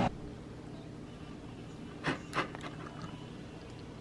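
Two light clicks about a third of a second apart, a fork touching a ceramic plate as a warmed protein bar is broken apart, over a faint steady low hum.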